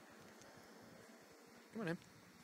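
Low steady background hum, then near the end a short call from a man's voice, its pitch swinging up and down in a coaxing sing-song.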